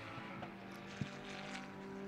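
A GT race car's engine heard faintly from trackside, running at a steady note. A single short click about a second in.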